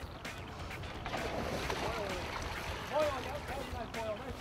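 Sea water sloshing at the side of a fishing boat over a low steady rumble. People's voices call out briefly in the middle and again near the end.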